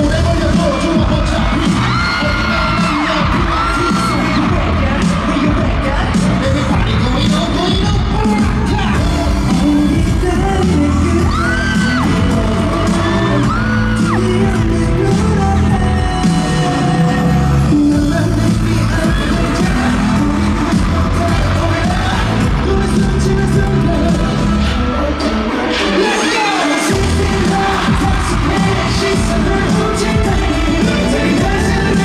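Loud live pop music over a concert sound system, with a heavy beat and crowd cries and cheering over it. The bass drops out for about a second near the end.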